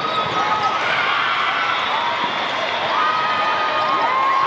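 Athletic shoes squeaking on an indoor sport court during a volleyball rally: many short squeaks with a few sharp knocks of play, over a steady hubbub of voices in a large hall.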